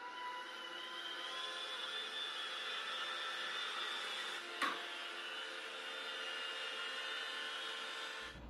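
iRobot Roomba J7 robot vacuum running as it drives off to clean, a steady whir with a high motor whine. A single short knock a little past halfway.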